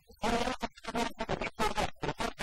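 A man's voice speaking into a lectern microphone in quick syllables, the sound harsh and distorted, with every syllable smeared into a hiss-like rasp.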